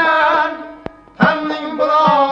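Male voice singing an Uzbek Khorezmian folk song with long, ornamented held notes over string accompaniment; about half a second in the line fades out, and the voice comes back in a little after the one-second mark.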